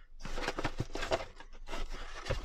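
Rustling of cardboard and plastic packaging with several small clicks, as a craft punch board is worked out of its box by hand.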